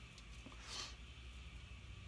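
Quiet room with a steady low hum and the soft squish of shaving lather being worked over the face with the fingertips, with one brief soft hiss about two-thirds of a second in.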